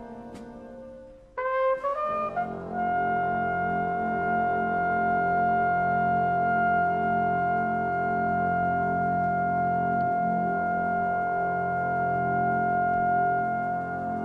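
Flugelhorn rising in a quick run of notes about a second and a half in, then holding one long high note for about ten seconds over the big band's sustained brass chord.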